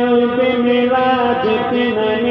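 A man singing an Urdu devotional naat, drawing out a long held note with small melodic turns and wavers in pitch.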